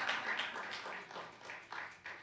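Audience applauding, thinning out to a few scattered claps toward the end.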